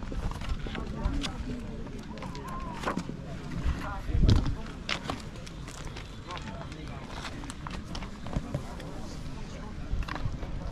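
Faint, indistinct voices talking in the background, with scattered clicks and knocks. The loudest is a low thump about four seconds in.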